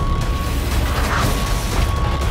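Movie-trailer score and sound design: rapid mechanical ticking clicks over a heavy, deep bass rumble, with a thin high note held on top.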